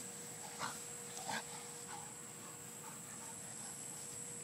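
A dog making two short vocal sounds, under a second apart, in the first second and a half, followed by a few fainter ones.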